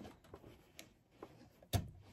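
Faint scattered ticks and rustles as a quilt is pushed through a domestic sewing machine by hand, with one sharper click near the end.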